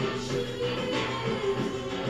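Music played on a cassette tape player, a song with a steady beat.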